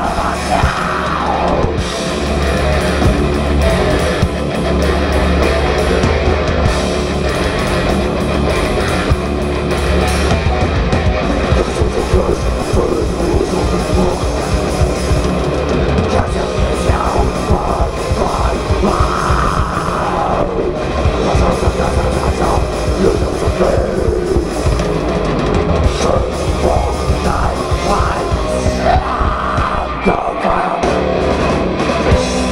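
Live thrash metal band playing: distorted electric guitars, bass guitar and drum kit, loud and continuous.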